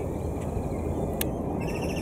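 Steady low rumble of open-air ambience on a moving aerial skyride, with a single click about a second in and a rapid, evenly pulsed high-pitched trill starting near the end.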